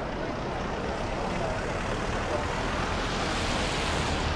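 Road traffic passing close by: a steady rush of tyre and engine noise that grows louder toward the end as cars approach and drive past.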